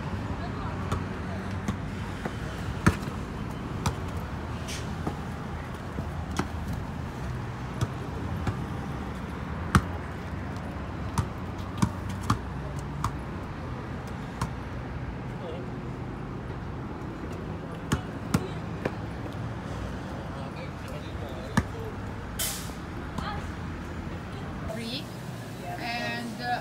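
Shop ambience: a steady low hum with indistinct voices in the background and scattered sharp clicks and knocks.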